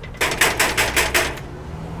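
Knuckles knocking rapidly on a metal security screen door, a quick run of about six sharp, rattling raps.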